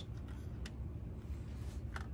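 Quiet room tone with a low steady hum and a faint click about two-thirds of a second in, from a plastic scale-model truck body and grille being handled.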